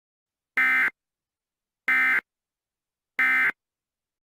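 Emergency Alert System end-of-message (EOM) data bursts: three short, identical buzzy digital bursts about 1.3 seconds apart, the encoder's signal that the alert has ended.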